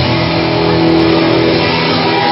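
Live psychobilly band with electric guitar and upright double bass, played loud; at the start the beat stops and a held chord rings on.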